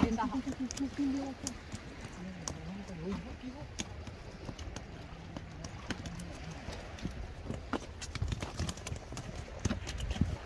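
Irregular light taps and slaps on wet wooden boards, the sound of freshly caught mullet flopping on a boardwalk. Faint voices are heard in the background.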